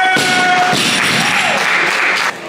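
A loaded barbell with bumper plates dropped onto the lifting platform just after the start, followed by clapping and cheering for a made snatch.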